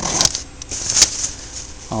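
The seat-recline strap of a Schwinn Safari TT double jogging stroller pulled back to lower the seat: a short scrape at the start, then a sharp click about a second in.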